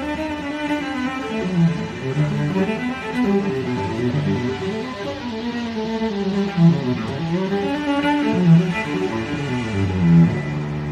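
Bowed cello playing a melody, its notes sliding from one pitch to the next.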